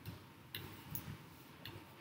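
Faint, irregular clicks of a stylus tip tapping on the glass of an interactive whiteboard screen while a word is handwritten, about four ticks in two seconds.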